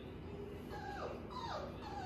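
Four-week-old Labrador puppy whimpering: three short high whines, each falling in pitch, starting a little under a second in.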